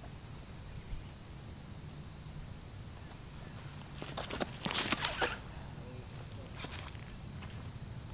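Footsteps and scuffs of a disc golfer's run-up on a paved tee pad, a quick cluster about four to five seconds in, with the disc thrown. Insects trill steadily and high-pitched throughout.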